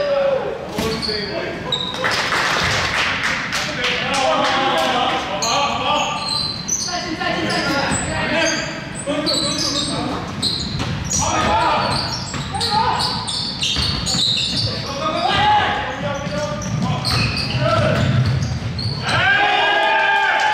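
Basketball game on a hardwood gym court: the ball bouncing, sneakers squeaking and players calling out to each other, all echoing in a large hall.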